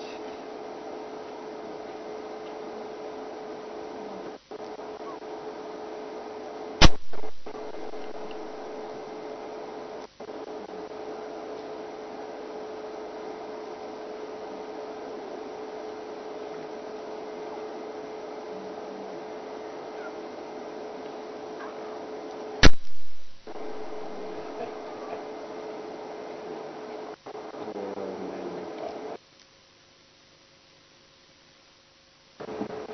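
A steady hum over hiss, broken by two loud, sharp clicks about sixteen seconds apart. The sound cuts out abruptly shortly before the end.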